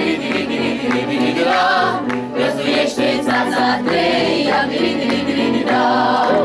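Mixed choir of women's and men's voices singing a Romanian traditional folk song, the voices holding and bending long sung notes without a break.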